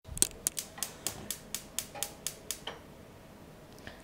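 Gas stove burner's spark igniter ticking about a dozen times at a steady four to five clicks a second as the burner is lit, then stopping near the middle, when the flame catches.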